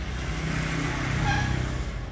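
A motorbike engine runs steadily at a low idle. A louder swell of engine noise builds through the middle and fades near the end.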